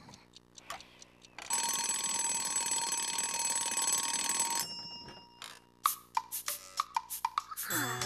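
Cartoon twin-bell alarm clock ringing for about three seconds, starting about a second and a half in and cutting off suddenly. A run of sharp clicks follows near the end.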